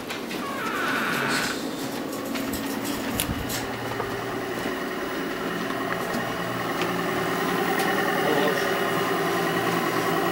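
Steady electrical-mechanical hum of laboratory equipment, made of several held tones, growing slightly louder towards the end, with a few faint clicks.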